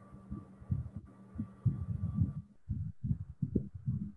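Stylus writing on a pen tablet, picked up as many irregular low thumps and knocks, several a second, over a faint steady hum.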